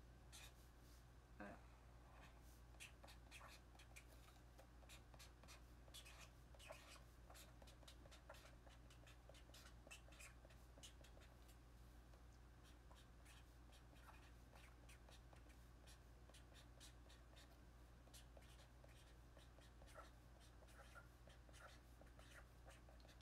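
Near silence: faint, scattered small clicks and scratches close to the microphone over a low steady hum.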